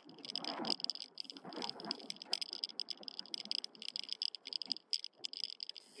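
Bicycle freewheel ticking rapidly and unevenly, a fast run of light metallic clicks, over low wind and tyre hiss from riding.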